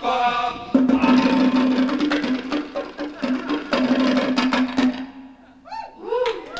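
Fast bongo drumming over a held low note. The drumming stops about five seconds in, followed by a short rising call.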